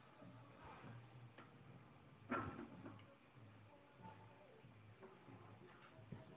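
Mostly near silence while a steel threaded rod and its nuts are handled in a bench vise: a few faint ticks and one sharper metallic click about two seconds in.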